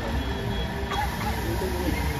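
Indistinct chatter of children and adults, with a steady low rumble underneath.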